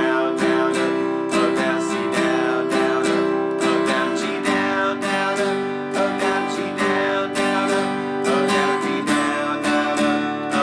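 Acoustic guitar strummed steadily in a down, down-up, up, down-up pattern through a chorus of C, G and D open chords. The chord changes about four and a half seconds in and again near the end.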